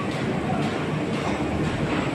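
CHM-1400 paper roll sheeter running well, unwinding four reels of 65 gsm offset paper and cutting them into sheets: a steady mechanical running noise with a faint regular beat.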